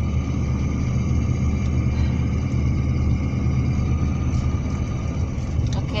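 Steady low rumble of a car's engine and tyres heard from inside the cabin while driving, with a faint steady high whine above it.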